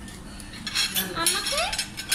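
Metal knife and fork scraping and clinking against ceramic plates, in a quick run of strokes that starts about a third of the way in.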